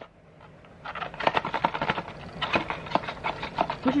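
Cardboard advent calendar box being handled and shaken, with a plastic-wrapped item inside giving a rapid, irregular run of crinkles and small knocks that starts about a second in.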